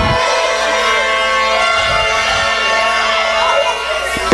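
Wrestling entrance music over a PA: epic-sounding sustained chords held steady, with a low thud right at the start and another about two seconds in.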